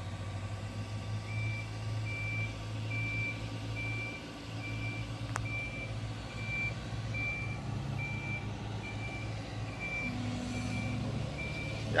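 Diesel engine of a Caterpillar tracked excavator running steadily under working load. A backup alarm beeps about twice a second from about a second in, and there is one sharp click about halfway through.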